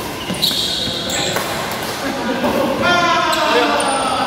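Indoor badminton rally: a few sharp racket hits on the shuttlecock echo in a large hall, followed by players' voices about two and a half seconds in as the point ends.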